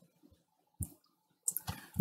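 A few soft computer-mouse clicks advancing a presentation slide, the first a little under a second in and a couple more near the end.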